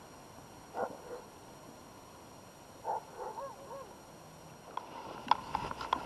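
Distant animal calls over faint outdoor background: one short call about a second in, then a run of three or four short calls about three seconds in, with a few faint clicks near the end.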